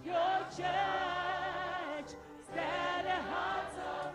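Church choir singing a gospel song in two sung phrases, with a short break about two seconds in.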